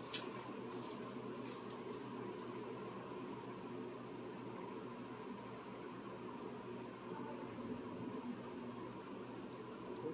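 Faint, steady background hiss and hum with a single light click right at the start; no distinct sound event.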